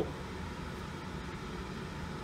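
Steady, even background noise of a room, a low hiss with no distinct events.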